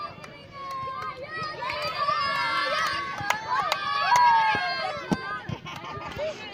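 A group of girls chattering and calling out all at once, loudest through the middle. A few sharp taps sound among the voices.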